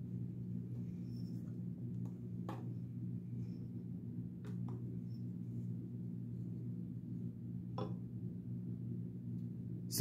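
A few faint clicks and taps as a digital kitchen scale and a large folding knife are handled and set down: one about two and a half seconds in, a quick pair near the middle, and one near the end. A steady low hum runs underneath.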